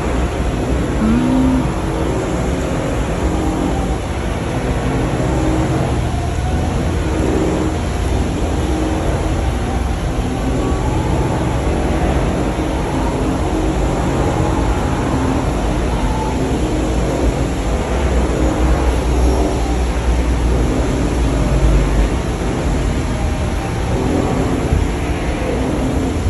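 Steady, loud, low rumbling background noise that holds without clear breaks or separate events.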